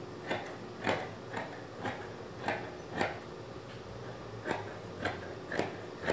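Fabric scissors cutting through thin knit (jersey) fabric on a table, the blades closing in repeated snips about two a second.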